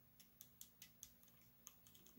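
Near silence with faint, scattered small clicks, about eight in two seconds, of a plastic action figure and its sword accessories being handled.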